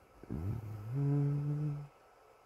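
A man's low, wordless hum about a second and a half long. It steps up in pitch partway through and breaks off abruptly near the end.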